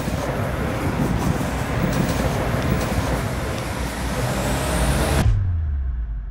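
Street traffic noise: a road vehicle running close by, a low rumble under a steady hiss. About five seconds in, the upper part of the sound cuts off suddenly, leaving only a muffled low rumble that drops in pitch.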